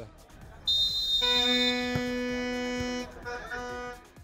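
A high, shrill whistle-like tone, then a steady, pitched horn-like tone held for about two seconds. A shorter, quieter repeat of the lower tone comes near the end.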